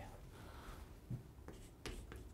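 Faint chalk on a chalkboard: a few light taps and scrapes in the second half as writing begins, over quiet room tone.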